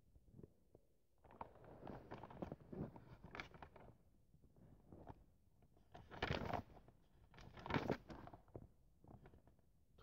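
Faint rustling and handling noises: irregular light taps, rubs and crackles in uneven clusters, slightly louder twice in the second half.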